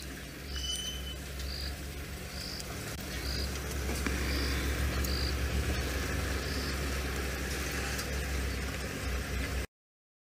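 Night bush ambience: an insect chirping in short, high notes at a regular pace of about one a second, over a steady low hum. The sound cuts off abruptly near the end.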